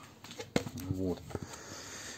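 A man says one short word, with a few faint clicks around it as a plastic pipe is handled.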